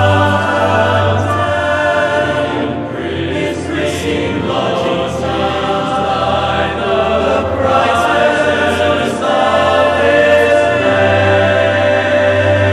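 Teenage boys' choir singing held chords in harmony, with strong low voices and the hiss of sung consonants cutting through now and then.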